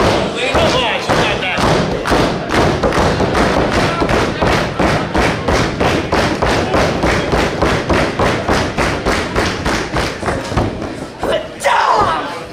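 Wrestling crowd pounding out a steady fast rhythm of thumps, about three to four a second, with crowd voices among them. The rhythm stops shortly before the end.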